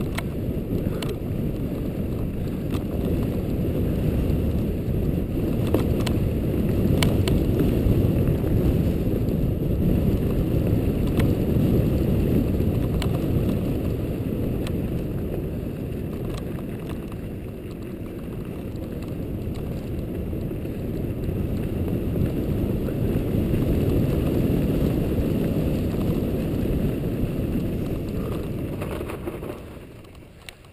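Wind buffeting the microphone of a camera on a moving mountain bike, mixed with tyre rumble on the snowy trail and occasional sharp clicks from the bike. The rushing swells and dips, and falls away near the end as the bike slows.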